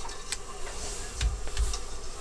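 A t-shirt and its heat-transfer sheet being handled and smoothed by hand: light rustling with small clicks and a couple of soft thumps, over a faint steady hum.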